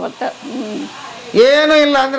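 A woman's voice talking, with a long held vowel near the end.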